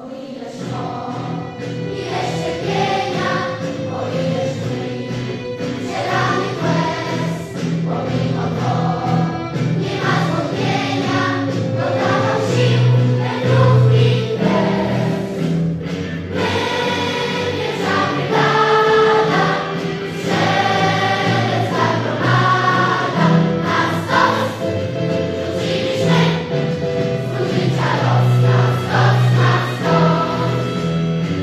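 Large mixed choir of children and adults singing in parts, coming in suddenly right after a near-silent pause.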